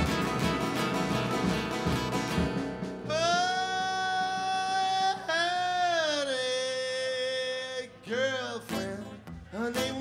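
Live country-style band: acoustic guitar and electric bass strumming in time, then from about three seconds in a long wordless sung note held over the band, bending down twice before shorter vocal phrases come in near the end.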